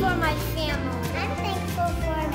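Background music with a sung vocal line over a steady bass.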